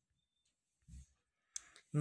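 Near quiet, broken by a soft low thump about halfway and a single sharp click a little later; a man's voice begins right at the end.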